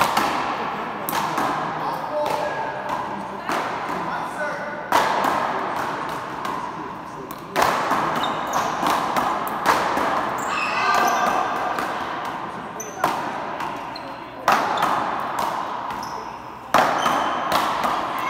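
Big-ball paddleball rally: a rubber ball smacked by paddles and rebounding off the front wall and floor, a sharp hit every second or two, each echoing on in a large indoor court, with voices between the hits.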